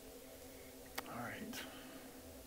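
Quiet hall room tone with a steady low hum. About a second in comes a sharp click, then a brief faint whisper of a person's voice and another click.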